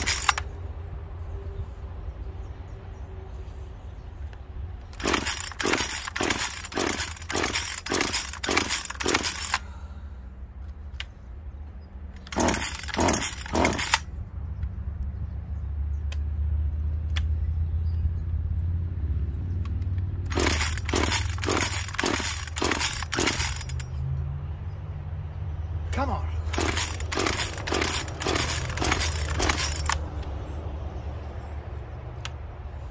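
Echo CS-2511P top-handle two-stroke chainsaw being pull-started: four runs of quick, sharp strokes from cord pulls and cranking, each a few seconds long, with pauses between them. The engine does not settle into a steady run.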